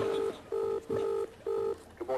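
Telephone ringing tone heard down the line of a call being placed: four short, low beeps in quick succession, all at the same pitch.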